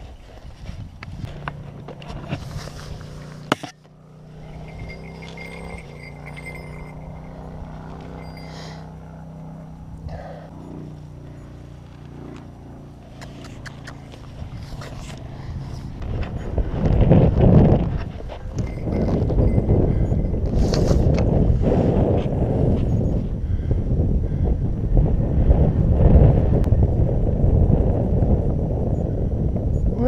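Wind buffeting the microphone, gusty and rising to a loud rush about halfway through. Before that the wind is quieter, with a faint steady low hum and a few handling knocks near the start.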